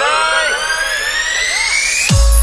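A DJ remix riser effect: a synthesized tone sweeping steadily upward in pitch, over the echoing, fading tail of a spoken word, building to a cut at the very end.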